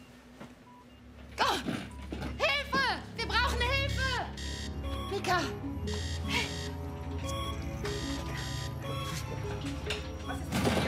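A woman crying out in distress without clear words, with short electronic beeps from a hospital patient monitor early on. Tense dramatic music swells in from about four seconds in and carries on steadily.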